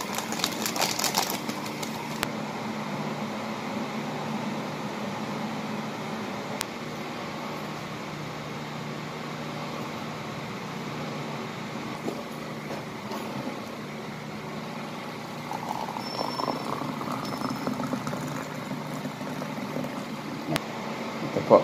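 A foil drink sachet crinkling as it is shaken out into a mug, over a steady low mechanical hum that continues throughout, with a few light taps and crackles later on.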